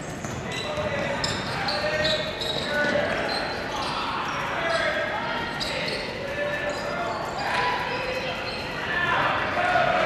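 Basketball dribbled on a hardwood gym floor during game play, amid a murmur of crowd and player voices with shouts, all echoing in a large gym.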